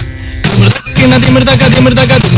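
Mohiniyattam dance accompaniment music: a sharp stroke at the start, a brief lull, then the melody and rhythm resume about half a second in.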